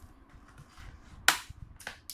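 Plastic clips of an Acer Aspire F15 laptop's bottom access cover snapping loose as the cover is pried off: two sharp clicks, the louder about a second and a quarter in, the other just before the end.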